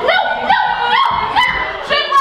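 A performer's voice barking and yipping like a dog: a quick run of short yaps that rise and fall in pitch, about two or three a second.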